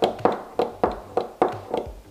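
A quick, even series of sharp taps, about three a second, which stops near the end.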